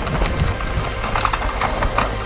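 Mountain bike riding fast down a dirt trail: tyres rolling and scrabbling over loose dirt, with a run of irregular knocks and rattles from the bike over bumps and roots.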